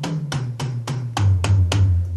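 Electronic drum kit playing its sampled tom-tom sounds: a quick fill of about ten hits that moves from a higher tom to a deeper floor tom about a second in.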